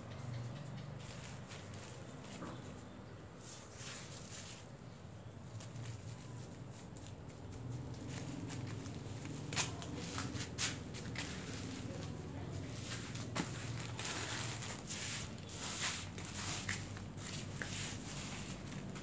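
Hands pressing and scooping potting soil into a black plastic polybag, with soft rustling and crinkling of the plastic and a few sharp clicks from about halfway in, over a steady low hum.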